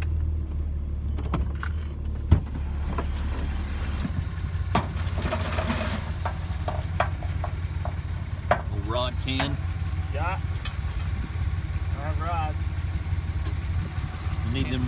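An engine idling as a low, steady drone, with a few scattered sharp knocks, the loudest about two seconds in.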